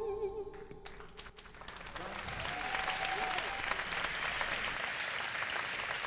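The song's last held note, with wide vibrato, dies away in the first half second. A few scattered claps follow, and the audience's applause swells up about two seconds in and holds steady.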